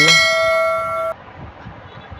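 Bell-like ding sound effect from a subscribe-button animation: a single chime of several steady ringing tones that lasts about a second and cuts off suddenly.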